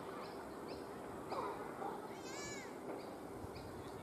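Birds calling outdoors: a string of short, high chirps about twice a second, and about two seconds in one louder, arched, mewing call.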